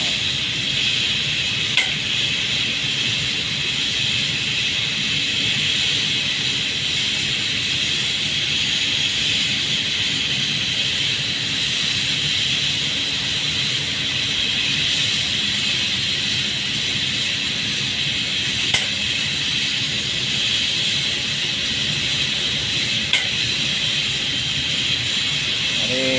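Steady hiss of a paint spray gun coating underground pipes, with a low machine hum underneath and a few faint clicks.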